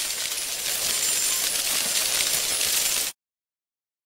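A bright, steady tinkling and hissing sound effect with many high clinking notes, which cuts off suddenly about three seconds in.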